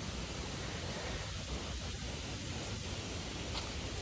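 Steady low rumbling noise with no distinct events, wind on the microphone.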